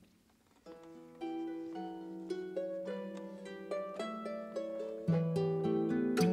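Harp playing a slow solo introduction of single plucked notes that ring on, starting about a second in. Louder low notes come in near the end, filling out the sound.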